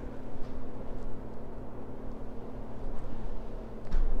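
Low steady rumble with a faint hum, a wavering room noise without any distinct event, and a small click near the end.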